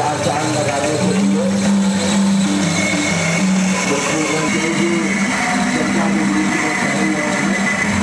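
Steady, loud din of a crowd's voices mixed with amplified music, with long held notes throughout.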